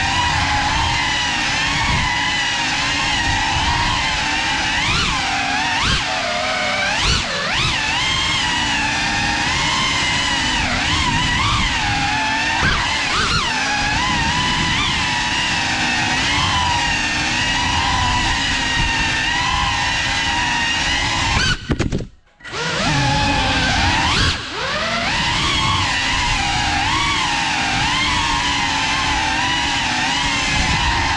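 Motors and propellers of a CineLog35 cinewhoop FPV drone whining loudly, heard from the GoPro on board, the pitch wavering up and down with the throttle. About three-quarters of the way through the whine cuts out for under a second, then comes back.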